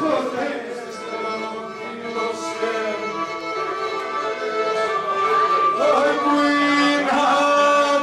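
Pontic lyra, a small three-string bowed fiddle, playing a melody, with a man's singing voice joining it about six seconds in.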